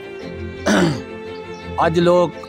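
A man clearing his throat once, a short rough burst about halfway in, over steady background music, with speech beginning near the end.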